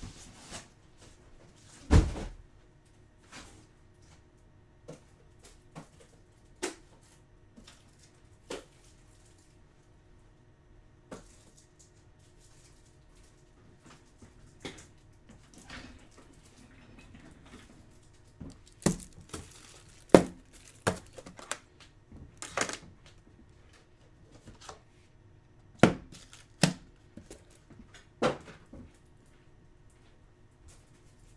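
Rigid plastic card toploaders and their box being handled and set down on a tabletop: scattered sharp clacks and knocks at uneven intervals. The loudest comes about two seconds in, and several follow close together around twenty seconds in.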